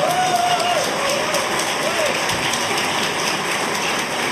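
A large audience applauding steadily in a hall, with a voice or two rising above the clapping in the first couple of seconds.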